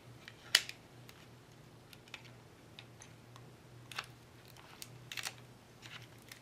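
Scattered small clicks and taps from hands wrapping double-sided tape off its roll around the base of a wine glass. The sharpest click comes about half a second in, with a few more near the end.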